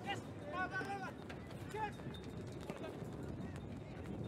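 Pitch-side sound of a football match: players' short shouts over a steady low murmur of crowd and field noise, with a few sharp knocks.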